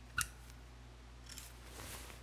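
Horizontal toggle clamp snapping shut over centre onto a workpiece: one sharp metallic click about a fifth of a second in, with a brief ring, followed by a few faint handling ticks.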